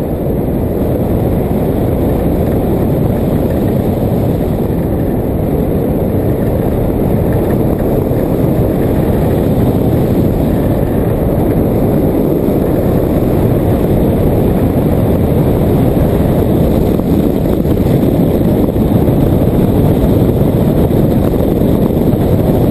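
Steady rumbling wind noise from airflow over a hang glider's wing-mounted camera microphone in flight, growing a little louder toward the end.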